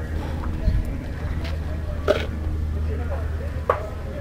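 Faint distant voices over a steady low hum, with three brief sharp clicks.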